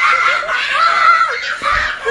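High-pitched human laughter mixed with shrieking, with a dull thump near the end.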